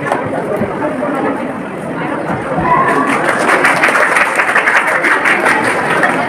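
Murmur of a seated audience, then applause breaking out about halfway through and carrying on louder.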